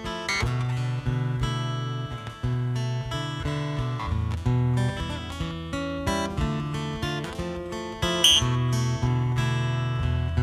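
Solo steel-string acoustic guitar playing the instrumental intro of a song: chords plucked and strummed over sustained bass notes, with no singing yet.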